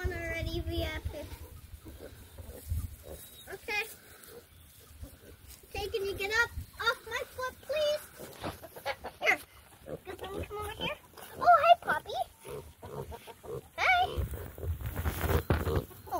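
Kunekune pigs grunting on and off, with a young girl's high voice chattering between them.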